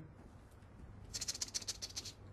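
A quiet, rapid rattle of small clicks, high-pitched and lasting under a second, starting about a second in.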